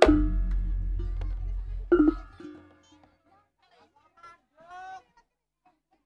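A jaranan gamelan ensemble stopping: two last ringing strikes on tuned gongs, the second about two seconds in, over a deep gong hum that dies away within a few seconds. Faint crowd voices and a short shout follow.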